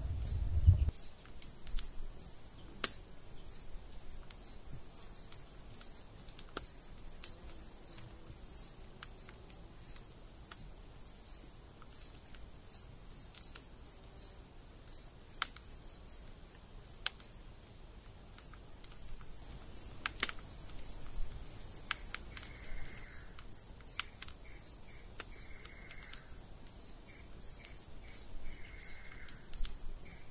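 Crickets chirping steadily at night, about three chirps a second, over a steady high-pitched hiss, with a few faint clicks.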